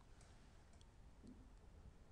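Near silence: room tone with a few very faint clicks.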